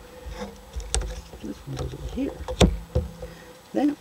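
Jigsaw puzzle pieces being handled and pressed into place on a tabletop, with a few sharp clicks as pieces tap down.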